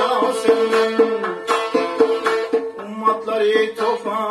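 Khorezmian folk music played live: a man sings while plucking a tar, a long-necked lute with a double-bowled body, and a doira frame drum keeps a steady beat alongside.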